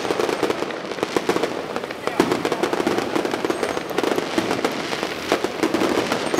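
Fireworks display: shells bursting overhead in rapid succession, a dense, unbroken run of crackles and bangs.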